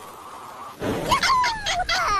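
A cartoon character's squawky, gobbling cry with pitch gliding up and down, setting in loudly about a second in after a faint hiss.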